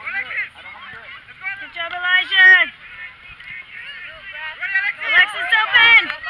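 Several high-pitched voices shouting and calling over one another across a youth soccer field, growing busier and loudest near the end.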